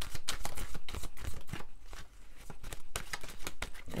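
A tarot deck being shuffled by hand: a quick run of crisp card slaps for the first second and a half, then slower, softer, scattered slaps.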